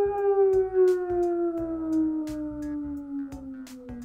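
A woman's long voiced exhale: one held tone that slides slowly down in pitch and fades toward the end, the out-breath of a deep breathing exercise.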